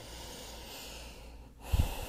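A person's long, steady breath, heard close on a worn microphone, for about a second and a half, followed near the end by a brief low thump.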